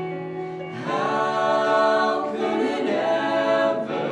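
Mixed vocal trio singing a Christian song in harmony. A single male voice sings alone at first, and the two female voices join him about a second in, making it louder and fuller.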